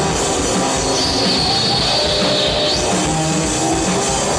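Live rock band playing loud and without pause: electric guitars, bass guitar and a drum kit together. A thin high steady tone rings over the band from about a second in for under two seconds.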